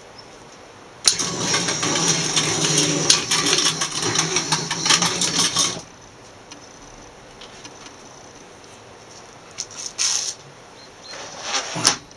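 Motor-driven wax-foundation roller machine running for about five seconds, a steady motor hum with a fast rattling clatter, then switching off suddenly. A few short rustles follow near the end.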